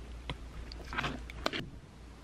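A few light clicks and taps of chopsticks against a dish, the sharpest about one and a half seconds in. Under them runs a steady low hum that cuts off at the same moment.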